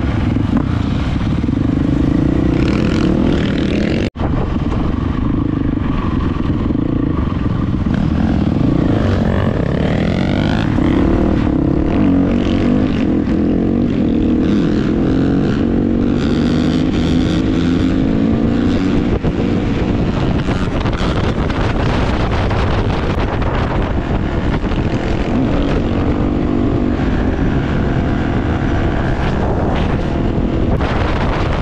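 KTM dirt bike engine running under load, revving up and down through gear changes as the bike rides along. A brief dropout about four seconds in.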